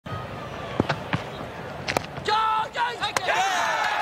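A few sharp knocks of a cricket ball off the bat and into the stumps in a Test match, followed by players' high-pitched shouts of appeal and a crowd cheering.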